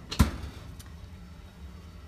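A single solid thump just after the start, with a faint click later: a washer pedestal's storage drawer being pushed shut.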